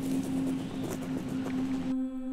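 A single steady low drone note held from a horror film score, over a hiss of background noise with a few faint ticks.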